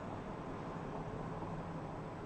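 Steady outdoor background hum of distant road traffic, heard from high up, with a faint low drone and no distinct events.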